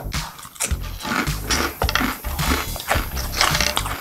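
Close-up chewing of a crispy fried snack, a quick run of sharp crunches at about three a second.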